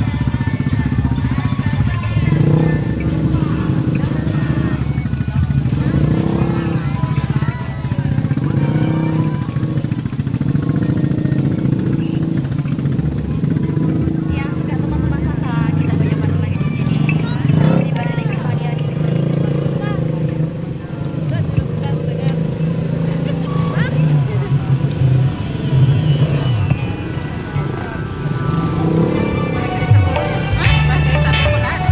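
Music of a Sasak nyongkolan wedding procession, mixed with people's voices and motorcycle engines.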